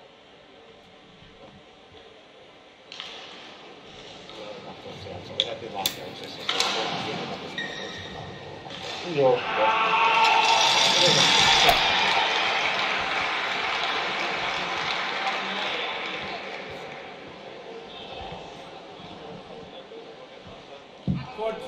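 Indistinct voices echoing in a large sports hall. They are faint at first, with a few sharp knocks around six seconds in, then swell to a loud wash about nine seconds in and fade slowly over the following several seconds.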